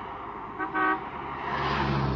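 Street traffic: a car horn gives one short toot about half a second in, over road noise that swells as a car passes near the end.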